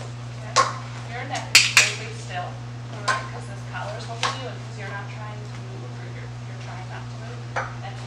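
Strap buckles clicking and clattering as a gurney's seat-belt-style restraint straps are unfastened and dropped against its frame: about half a dozen sharp knocks at irregular intervals, a close pair of them early on, over a steady low hum.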